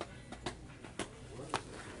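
Quiet indoor store background with a few faint, short clicks or taps.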